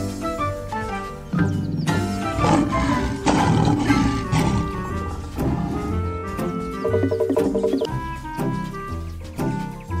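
Background music for a cartoon, with a lion roar sound effect from about one and a half seconds to four and a half seconds in.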